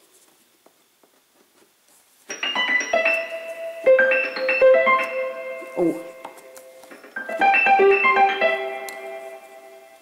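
Casio CTK-4200 home keyboard playing a layered sound of two piano voices mixed together. A run of notes and chords starts a couple of seconds in, then after a short gap a second phrase rings out and fades near the end.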